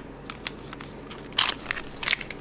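Cardboard door of a tea advent calendar and a paper tea sachet being handled and pulled out: a few short crackles and crinkles, the loudest about one and a half seconds in.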